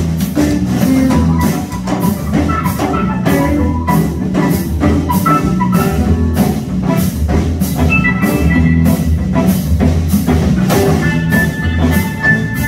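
Live rock-blues band playing: electric guitars, keyboard and drum kit, with the drums keeping a steady beat of about two strokes a second. A held high note comes in near the end.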